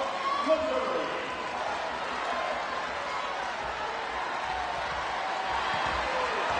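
Steady murmur of a large crowd in an indoor arena, with a few voices standing out briefly in the first second, between rallies.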